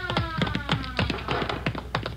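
Radio-drama sound effects: a police siren winding down in a slow falling tone that fades out about a second and a half in, over a rapid, irregular string of taps and clicks.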